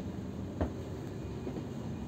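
Steady low rumble of a coach bus heard from inside the cabin, with a single short rattle a little over half a second in.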